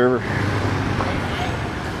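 Steady road traffic noise from a town street, an even hum of passing vehicles.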